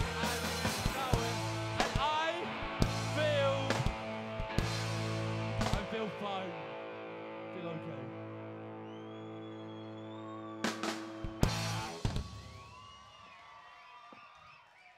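Indie rock band playing live: shouted, half-spoken vocals over electric guitar and drums for the first few seconds, then the song ends on a long held chord with a couple of final drum and cymbal hits, cut off sharply about twelve seconds in. Faint audience cheering and whistling follow.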